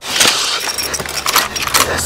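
Rustling and metallic rattling of a soldier's rifle and gear as he moves through brush and brings the rifle up to aim. A low steady hum joins about halfway through.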